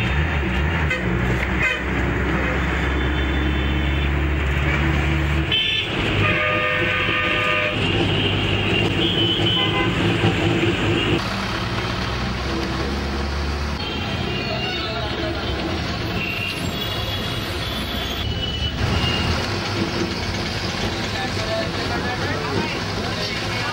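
Busy street traffic heard from a moving bus: the bus engine drones low and steady while vehicle horns toot again and again, the longest blast about six seconds in lasting nearly two seconds. Voices mix in.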